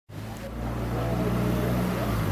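Motor vehicle engine idling, a steady low hum.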